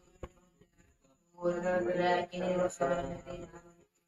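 A man's voice speaking in a slow, drawn-out, chant-like way from about a second and a half in, stopping just before the end. A single sharp click comes just after the start.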